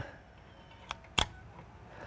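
Two sharp clicks from a hand wire crimping tool being worked on a blue insulated crimp connector, a little under a second in and again a third of a second later, the second louder.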